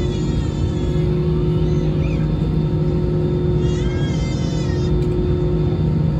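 Airbus A320-216's CFM56 engines idling during taxi, heard inside the cabin over the wing: a steady loud rumble with a constant low drone.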